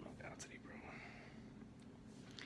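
A man's faint whispering over quiet room tone.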